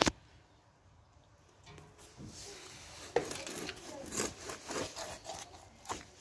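Grass carp being cut on a boti blade: a sharp knock at the very start, then from about two seconds in a string of short scraping cuts, the strongest about three, four and six seconds in.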